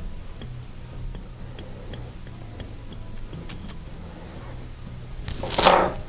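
Thread being whip-finished on a fly-tying vise: a few faint light ticks over a low steady hum, then a short sharp breath near the end.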